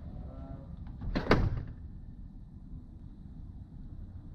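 Steady low rumble of outdoor wind on the microphone, with a short loud rush of air noise about a second in.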